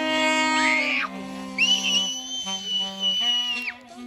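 Live acoustic band playing, with a bowed double bass and saxophones holding long notes. A little after a second in, a very high held note sounds for about two seconds over the others, then drops away.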